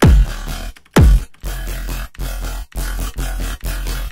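Riddim dubstep bass from a Serum synth patch playing back: two heavy hits with a downward pitch drop, at the start and about a second in, then a repeating chopped growl bass over a deep sub, about two notes a second.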